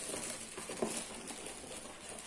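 Rustling and light handling knocks of groceries being rummaged through as the next item is picked out, with a couple of faint knocks in the first second.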